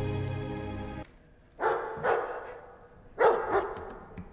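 Film soundtrack: tense music over a low drone that cuts off suddenly about a second in, then a large dog barking in two short bouts about a second and a half apart.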